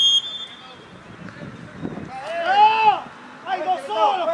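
A referee's whistle blast cuts off just after the start. Then come loud shouted calls from people around the pitch, one long rising-and-falling shout about two seconds in and more starting near the end.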